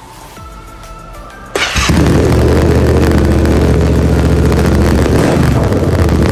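Yamaha Ténéré 700's parallel-twin engine started with its stock silencer removed. It catches about a second and a half in and then idles steadily, loud and unmuffled through the open pipe.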